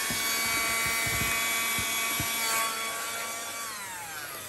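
Small handheld battery vacuum running with a steady motor whine while it sucks dead ants and debris out of the sand of an ant farm's outworld. Near the end it is switched off, and the whine falls in pitch as the motor spins down.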